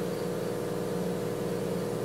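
A motor running steadily: an even mechanical hum with a constant tone, unchanging throughout.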